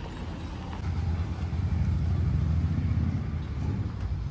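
A motor vehicle's engine running close by, a low rumble that grows louder about a second in and eases off near the end.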